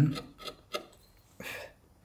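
A hand carving tool shaving wood in a few short scraping cuts, the longest about one and a half seconds in, with small clicks between them.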